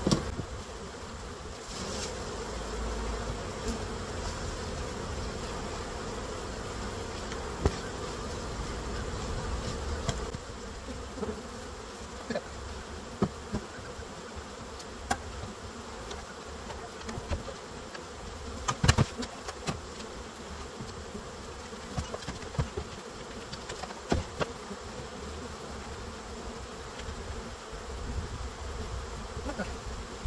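Many honeybees buzzing steadily as they fly around a hive box just after a swarm transfer. Occasional sharp knocks of wooden hive equipment being handled break through, the loudest cluster about two-thirds of the way through.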